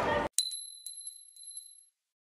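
Outdoor crowd chatter cut off abruptly a moment in, then a logo sting: one bright ding with a high ringing tone, followed by four or five glittering ticks that fade out after about a second and a half.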